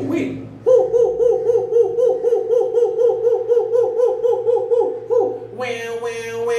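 A man's voice hooting "hoo-hoo-hoo" over and over in quick, even pulses, about four or five a second, for several seconds. Near the end it gives way to a held sung note.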